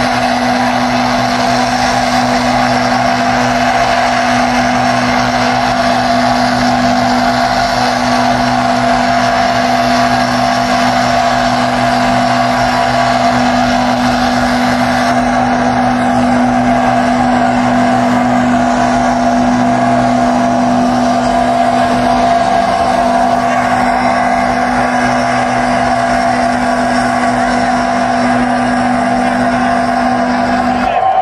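A live rock band's sustained drone through a festival PA, loud and held on steady low notes.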